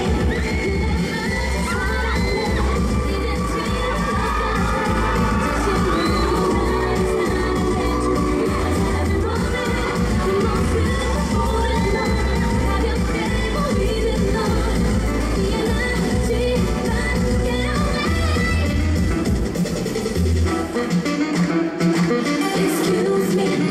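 K-pop dance track played loud over stage loudspeakers with a steady bass beat, with an audience cheering and shouting over it. The bass drops out briefly near the end.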